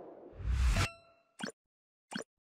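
A rising whoosh swells and cuts off sharply into a bright, briefly ringing ding, followed about half a second later by a short pop: a TV channel's logo-sting sound effect.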